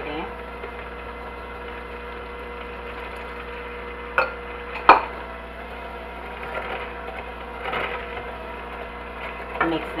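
Electric hand mixer running at a steady speed, its beaters whipping egg-and-sugar batter in a glass bowl. Two sharp knocks come about four and five seconds in.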